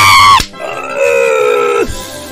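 Loud animal-like cry sound effect in two parts: a high, pitched cry that cuts off under half a second in, then a lower held cry that sinks slightly in pitch and stops abruptly just before the end.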